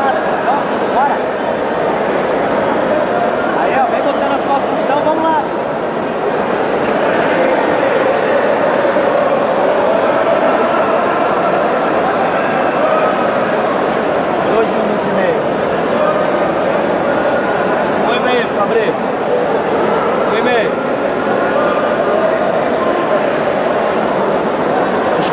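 Steady, loud babble of a crowd of spectators and coaches talking and shouting over one another, many voices overlapping with short shouts standing out.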